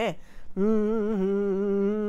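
A woman humming one long, steady low note that begins about half a second in.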